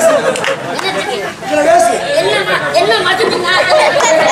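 Speech: actors' stage dialogue through the microphones, with more than one voice.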